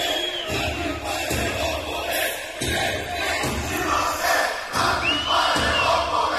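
Crowd of many voices chanting in unison, played through a public-address loudspeaker.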